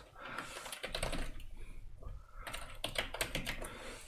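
Typing on a computer keyboard: a quick, uneven run of soft key clicks.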